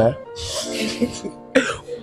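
Brief, breathy laughter after a spoken "¿eh?", over soft background music.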